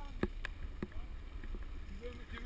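Steady low rumble of wind and mountain bikes rolling along a dirt track, picked up by a camera worn by a rider, with three sharp clicks in the first second.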